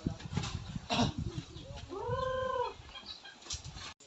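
A single animal call about two seconds in, under a second long, rising and then falling in pitch, with a few short knocks around it as cement bags are handled.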